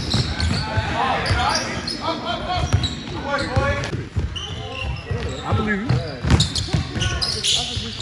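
A basketball bouncing on a gym floor during play: repeated short, sharp bounces under people talking.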